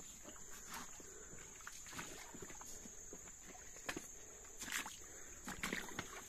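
Faint shallow stream trickling over pebbles, with a few footsteps crunching on gravel, most of them near the end.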